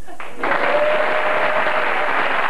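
Studio audience applauding, starting about half a second in, with a single steady tone held for over a second.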